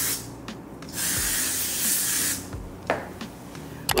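Cleaning spray hissing onto a fabric curtain in one continuous burst of about a second and a half, followed by a couple of short clicks near the end.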